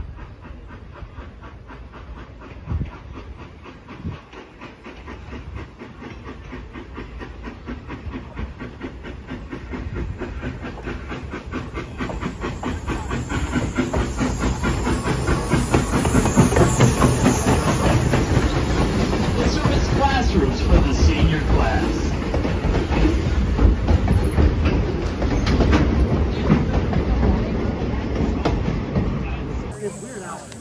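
Vintage steam locomotive No. 7 approaching and passing close by on the track, growing steadily louder until it is alongside, with steam hissing and a quick, dense clatter of wheels and running gear.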